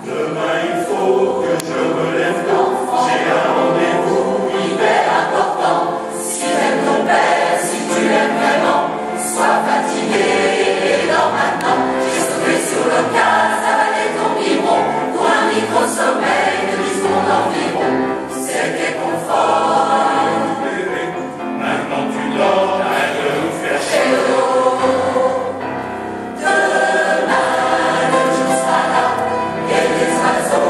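A choir singing a lullaby. The voices come in at the start, and there is a short lull shortly before 26 seconds before they come back in strongly.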